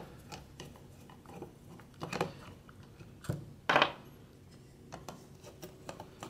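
Screwdriver turning screws out of a throttle body: faint metal ticks and scrapes, with two louder scrapes about two seconds and nearly four seconds in.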